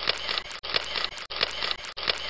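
Camera shutter clicking in repeated bursts, a new burst about every two-thirds of a second.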